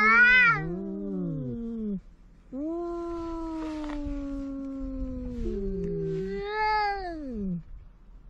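Cats yowling: long, drawn-out low calls that sag slowly in pitch, the longest lasting about four seconds, then a shorter, higher call that rises and falls near the end. These are the threat yowls of two cats squaring off to fight.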